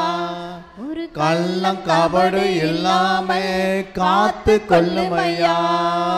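A man's voice singing a slow Tamil Christian devotional melody into a microphone. He holds long notes that slide in pitch, with a short break about a second in and another near the middle.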